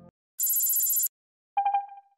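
Electronic ident sound effect: a bright, high buzzing tone lasting under a second, then after a short gap four quick beeps on one pitch, like a telephone ringing.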